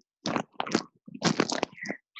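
Foil party balloon crinkling and crackling as it is bitten and torn open to get at its helium, in three rough bursts, the last and longest about a second in.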